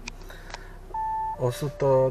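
An Audi's dashboard chime: a single short, steady electronic beep about a second in as the instrument cluster comes on, followed by a voice.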